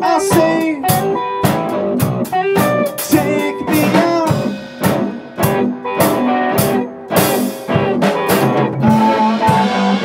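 Rock band music: guitar playing over a drum kit, with regular drum strikes.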